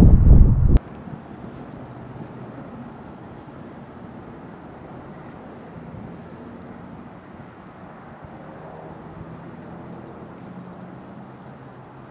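Wind buffeting the microphone, cutting off suddenly under a second in. After that, a faint steady outdoor background with a weak low hum.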